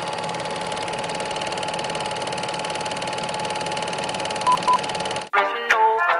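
A steady electronic buzz with a constant tone and fast crackle, broken by two short beeps near the end; it cuts off suddenly about five seconds in, and a reggae-dancehall song with singing starts.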